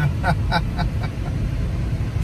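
Steady low rumble of a moving car's engine and road noise heard inside the cabin, with a few short vocal sounds from a passenger in the first second.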